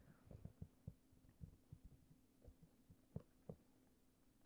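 Near silence with faint, irregular soft taps of a stylus writing on a digital tablet, over a low steady hum.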